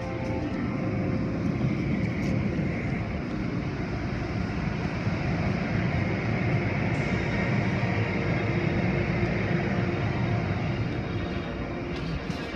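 Automatic car wash machinery running: spinning brushes and cloth strips working over a car amid water spray, a dense, steady low noise heard through glass.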